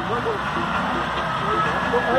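Steady vehicle engine running, with a low rumble under an even noise, and brief bits of faint voices talking over it.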